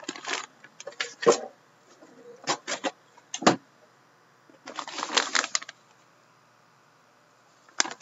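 Plastic bag around a jersey crinkling and rustling in short spells as it is handled and turned over, with a few sharp crackles, over the first six seconds.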